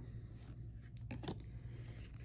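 Trading cards being flipped through by hand: faint rustles and a few sharp little clicks of card stock sliding over card stock about a second in, over a low steady hum.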